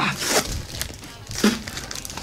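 A small cardboard box being torn open by hand: a tearing rip at the start, then a few short, sharp rips and crinkles of the packaging.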